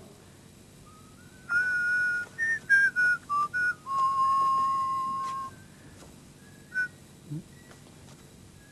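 A person whistling a short tune: a run of quick notes, then one long held note that sags slightly in pitch, and a brief last note near the end.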